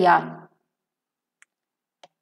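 A woman's spoken word trailing off in the first half-second, then near silence broken by two faint, brief clicks: one about one and a half seconds in and one at the very end.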